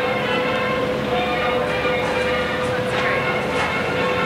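Busy street sound with people's voices, over a steady hum that holds one pitch throughout.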